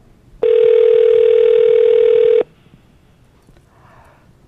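Telephone ringback tone on an outgoing call: one ring, a steady tone lasting about two seconds that starts about half a second in and cuts off sharply. It means the called phone is ringing and has not yet been answered.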